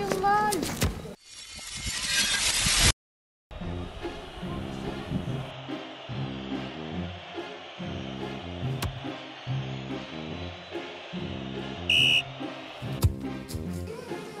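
A rising whoosh that cuts off suddenly, a brief silence, then background music with a repeating bass line; a short beep near the end.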